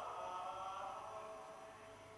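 Gregorian chant sung by a choir of monks, held notes slowly fading out.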